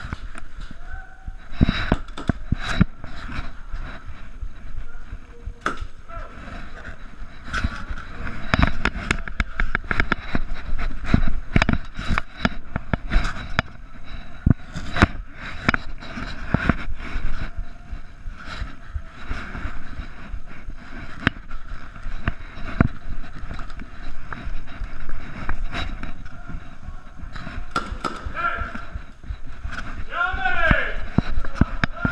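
Irregular sharp clicks, knocks and scuffs from an airsoft player moving through a building with a chest-mounted camera: footsteps on a debris-strewn floor and gear knocking and rubbing close to the microphone, with faint voices in the background.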